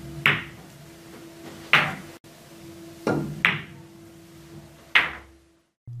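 Pool balls clicking during a series of shots: the cue tip striking the cue ball and the balls colliding, four sharp clicks about a second and a half apart, some with a fainter click just before.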